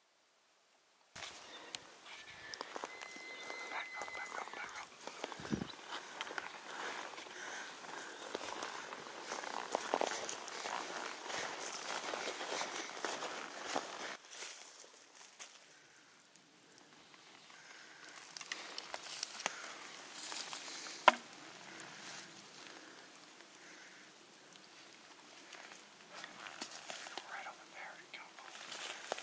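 Footsteps on a dry forest floor, with crackling twigs and leaf litter and the rustle of pack and clothing, beginning after a second of silence. One sharp snap about three-quarters of the way through stands out above the rest.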